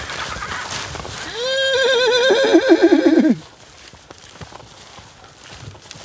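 A horse whinnying once for about two seconds, a high quavering call that drops sharply in pitch at the end.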